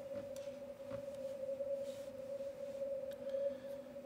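Yaesu FTdx5000MP receiver audio in narrow CW mode: band noise squeezed through a 100 Hz DSP filter with the audio peak filter, heard as a steady ringing tone around 600 Hz over faint hiss. The tone is unbroken, with no Morse keying audible.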